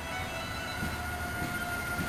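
Passenger train coaches rolling past a station platform, a steady low rumble of wheels on the rails, with violin music playing faintly over it.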